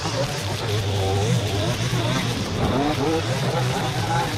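Gas string trimmers running steadily at high throttle, cutting through dry dead weeds and brush.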